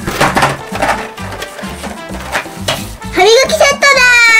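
Background music with a steady beat, and a rattling clatter in the first second as a boxed toy drops down a cardboard vending machine's chute. Near the end a voice-like tone rises and then falls.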